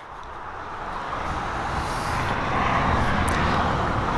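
A passing motor vehicle: a steady rushing noise with a low rumble, growing gradually louder throughout.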